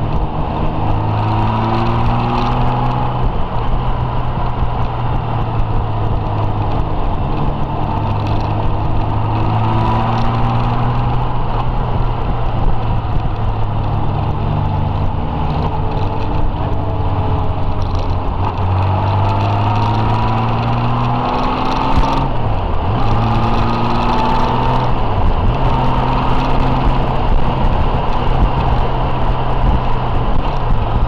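Touring motorcycle engine running under way, its note rising repeatedly as it pulls and dipping briefly twice about three-quarters of the way through, over a steady rush of wind and road noise.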